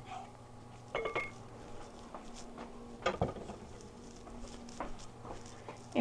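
Wooden spoon scraping and tapping melted butter out of a small ceramic cup into a ceramic mixing bowl: a light clink with a short ring about a second in and a sharper knock about three seconds in. A faint steady low hum sits underneath.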